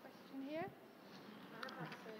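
Quiet hall with faint, distant voices. A short rising voice-like sound comes about half a second in.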